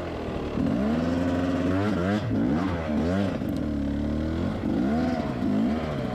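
Beta 250 RR two-stroke dirt bike engine revving up and down in repeated short throttle blips as it crawls at low speed over rocks and roots.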